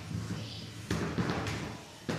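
Beetleweight combat robot crashing down onto the arena floor: a sharp slam about a second in, then a second knock, over a steady low hum. The robot's spinning weapon is striking the floor to flip it back onto its wheels after being tipped onto its end.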